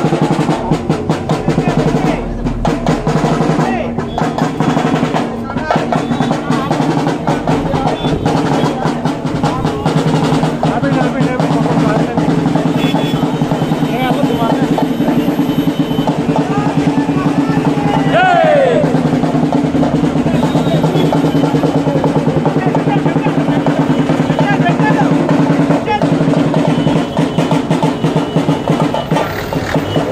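Street procession drums played in a fast, continuous roll, with voices of a crowd mixed in.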